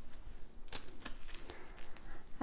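A Leki Shark Nordic-walking glove being pulled on by hand: fabric handling noise with a few short, scratchy clicks, the sharpest about three-quarters of a second in.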